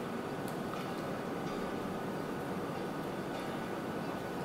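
Steady, even background hiss with no speech and no distinct events.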